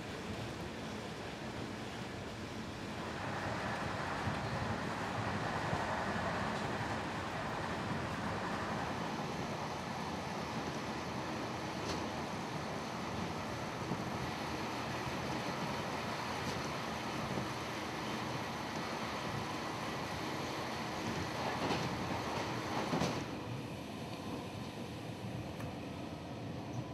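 Passenger train running, heard from inside the carriage: a steady rumble and rush of the moving train, louder from about three seconds in until near the end, with an occasional click.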